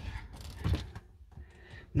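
Mostly quiet small-room tone with one short spoken word, and no clear mechanical sound.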